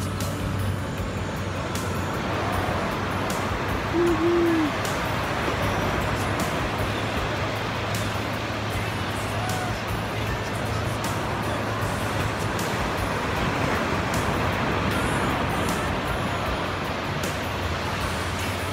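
Ocean surf breaking on the beach with wind rumbling on the phone's microphone, a steady wash of noise. A short pitched call sounds briefly about four seconds in.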